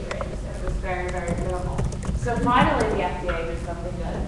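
A woman's footsteps as she walks across the front of the room, a few sharp clicks, under her own indistinct speech.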